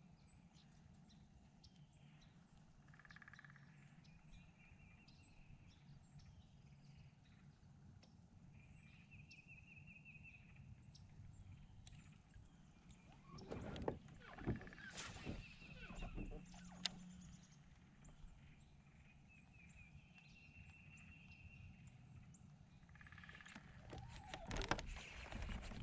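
Faint outdoor ambience on still water: birds calling in short trills every few seconds over a low steady hum. A brief cluster of knocks and clicks, the loudest sounds here, comes a little past the middle.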